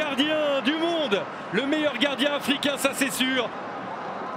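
A man's voice talking in quick, rising-and-falling phrases over the steady noise of a stadium crowd. The voice stops about three and a half seconds in, leaving only the crowd noise.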